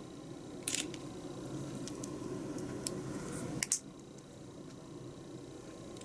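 Small plastic model-kit parts clicking as they are handled and pressed together, a few light clicks with a louder sharp click a little past halfway.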